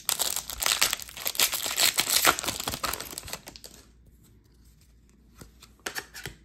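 A foil trading-card pack wrapper being torn open and crinkled by hand, a dense crackling for about the first three and a half seconds. Then it goes quiet apart from a few faint clicks of card handling near the end.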